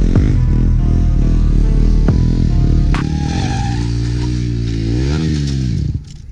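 Background music with a beat, giving way about halfway through to a stunt motorcycle's engine revving, its pitch sliding down, then rising and falling again near the end before it cuts off suddenly.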